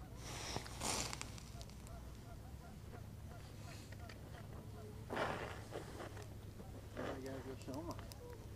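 Quiet handling noise, two brief rustles of jacket and gear as the angler shifts his rod over the ice hole, over a low steady hum, with a few faint words near the end.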